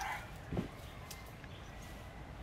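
A single short animal call about half a second in, over a faint, steady outdoor background with a few light ticks.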